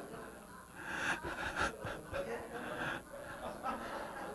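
Faint chuckles and murmurs from a few people in a quiet room, coming in short scattered bits.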